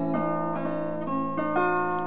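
Acoustic guitar being plucked, single notes struck one after another and left to ring over a held bass note.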